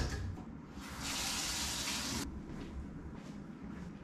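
A water tap running briefly: it comes on abruptly about a second in, runs steadily for just over a second, and cuts off.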